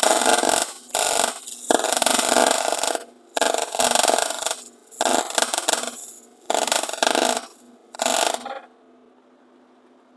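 MIG welder arc crackling as it lays weld on the steel kickstand extension, in about seven short bursts with brief pauses between them, stopping about 8.5 seconds in.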